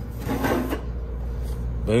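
Metal top cover of a rack-mount battery case scraping as it is slid and lifted off, a brief rasp lasting about half a second.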